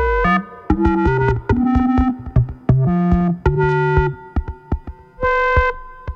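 Buchla Red Panel modular synthesizer playing an irregular sequence of electronic notes that jump between low and high pitches. Some notes are short and some are held for about half a second, with sharp clicks between them.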